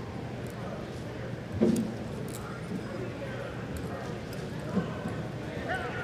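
Reining horse's hooves working on arena dirt, with one louder thump about a second and a half in and a lighter one near the end, over a steady arena background.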